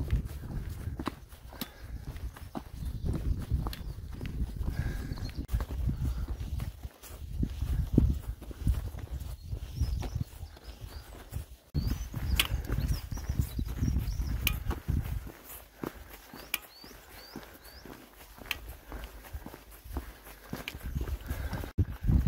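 Footsteps on a stony dirt trail during a steady uphill walk, with wind rumbling on the phone's microphone until about two-thirds of the way through. A few short, high bird chirps come in the second half.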